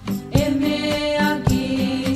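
Music from a Spanish-language devotional song, a passage without lyrics: held melody notes over a regular beat.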